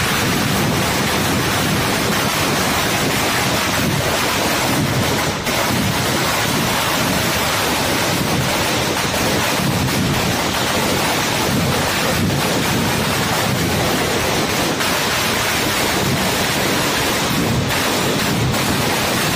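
Firecrackers going off in a continuous, rapid barrage of bangs, so dense that the cracks run together into one unbroken crackle.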